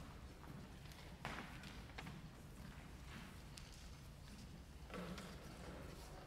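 Faint footsteps and a few scattered knocks as people move about on a wooden stage, over a low steady room hum; the loudest knock comes just over a second in, another around five seconds.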